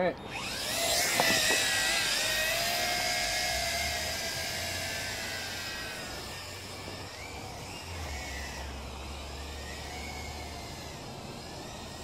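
Zoopa Mantis 600 toy-grade quadcopter taking off: its motors and propellers spin up with a rising whine, then settle into a steady high-pitched buzz that wavers with the throttle and fades slowly as it flies away.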